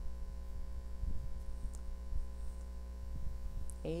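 Steady electrical mains hum with a buzz of fixed higher overtones, running under the recording with no speech.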